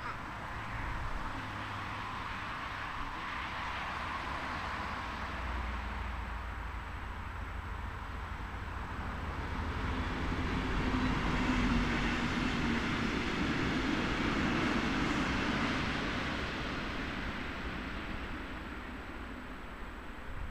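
Distant engine noise passing by: a low rumble and hiss that slowly swells, is loudest in the middle of the stretch, then fades away.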